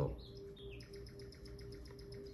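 A sharp click, then faint bird chirps: a few short falling notes followed by a quick run of high ticks, over a steady low hum.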